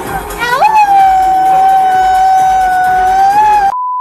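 A woman's voice howling "auuu" into a microphone in imitation of a husky: it rises about half a second in, then holds one long high steady note for about three seconds. It is cut off near the end by a short steady beep.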